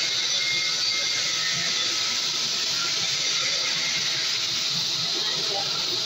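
CNC fiber laser cutting machine at work, giving a steady, even hiss.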